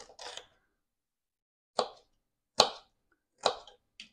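Kitchen knife cutting a red sweet pepper on a cutting board: a soft scrape at the start, then three sharp knocks of the blade striking the board, a little under a second apart.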